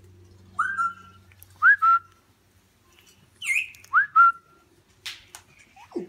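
African grey parrot whistling: a quick upward swoop that settles into a short level note, given in three bouts (the last two as quick doubles), with a higher, bending call between them.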